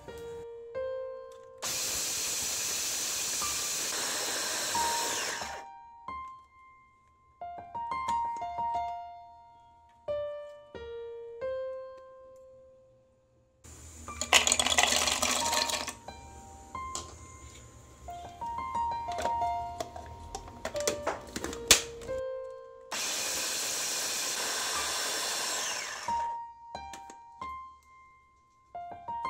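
Electric food chopper grinding fried edible gum (gond) and nuts, in three steady runs of a few seconds each, starting and stopping abruptly. Soft piano music plays between and under them.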